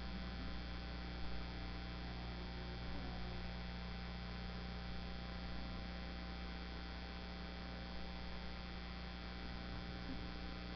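Steady electrical mains hum, a low buzz with a stack of overtones, with no voices over it.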